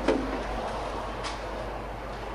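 Steady background noise of a tyre-fitting workshop, with a sharp click at the very start and a fainter knock a little past a second in.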